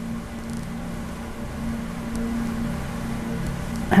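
A steady low hum over a faint even hiss: room tone.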